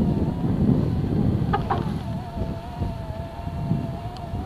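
A small vehicle engine running steadily at low speed, a wavering hum over a low rumble of travel. Two short clicks about one and a half seconds in.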